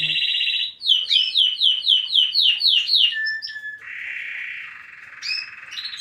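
Timbrado canary singing: a sustained high trill, then a run of quick descending notes about four a second, a short steady whistle, and a softer rolling trill near the end.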